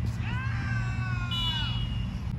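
A long, drawn-out shout from a player on the pitch, its pitch sliding down at the end. A thin, steady, high whistle-like tone starts about halfway through, over a low steady hum.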